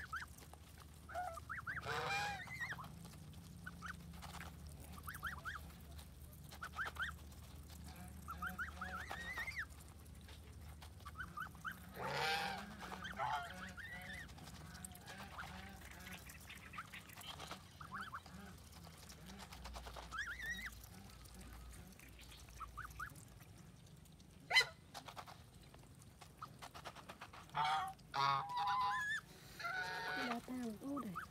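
Domestic geese honking at intervals, with short high calls between the louder honks. A single sharp knock, the loudest sound, comes late on.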